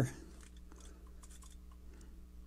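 Quiet room tone with a faint steady hum and a few faint small ticks in the first second or so.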